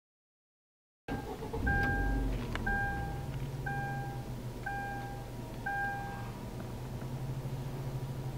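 Car engine starting and settling into a steady low idle, inside the cabin. An electronic warning chime beeps five times, about once a second, over the engine.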